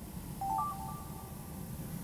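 Hot-air balloon propane burner firing overhead: a steady rough rushing noise that starts abruptly. About half a second in there is a short run of high electronic beeps.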